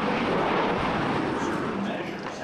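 Jet airliner flying past overhead, its engines making a steady, loud rushing noise.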